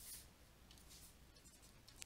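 Near silence, with faint brief scratches of a stylus writing on a tablet.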